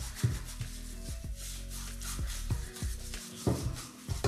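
Silicone pastry brush repeatedly rubbing oil across a nonstick baking pan, in short strokes, over soft background music.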